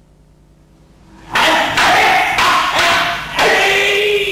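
Wooden practice swords (bokken) clashing in a rapid series of about five strikes, about a second in, together with loud kiai shouts; the last shout is drawn out and falls in pitch near the end.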